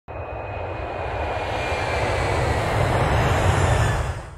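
Jet airliner engines running at high power, a dense roar that grows steadily louder, with a faint steady whine above it.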